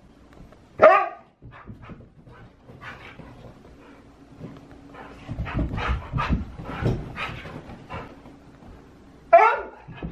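Siberian huskies playing: one gives a loud, wavering bark about a second in and again near the end. Between them come thuds of paws running and jumping on the floor and couch, mixed with shorter vocal noises.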